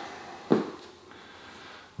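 A single short thump about half a second in, followed by quiet room tone.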